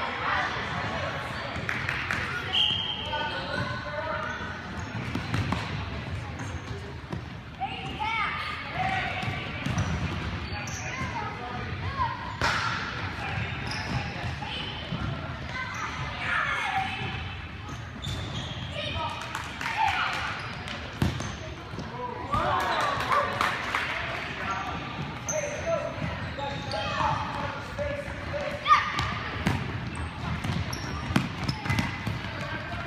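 Indoor futsal play on a hardwood gym floor: the ball is kicked and bounces with sharp thuds, sneakers squeak in short bursts, and players and spectators call out indistinctly, all echoing in the large hall.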